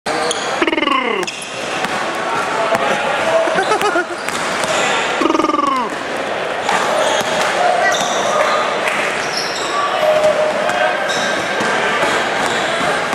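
Basketballs bouncing on a hardwood court in a large echoing hall, repeated thuds with voices in the background. Two falling squeals cut through, about a second in and again about five seconds in.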